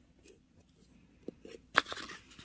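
Sticker sheets and stickers being handled: mostly quiet, a small tick partway through, then a sharp, crisp crackle of a sticker sheet near the end, trailing into a brief rustle.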